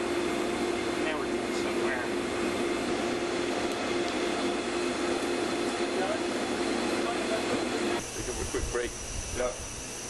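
Steady hum of ventilation or air-conditioning machinery with one constant low drone in it. About eight seconds in it cuts off abruptly, giving way to a different background with a thin high whine and a few faint voices.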